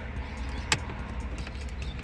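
Plastic radio trim cover on a Hyundai Getz dashboard pressed into place, with a single sharp click as it snaps in, about two-thirds of a second in, over a low steady rumble.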